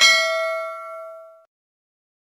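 A single bell 'ding' sound effect, the notification-bell chime of a subscribe-button animation, ringing and fading out within about a second and a half.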